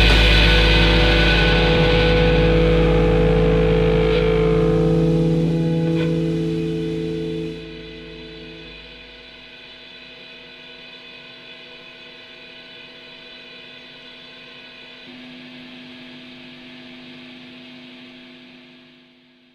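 Noise rock: a loud, distorted electric guitar drone with steady held tones over a heavy low end. About seven seconds in it drops away sharply, leaving faint ringing tones that die out at the close of a track.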